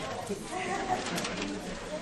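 Many people talking at once around tables, a steady overlapping hubbub of small-group discussion with no one voice standing out.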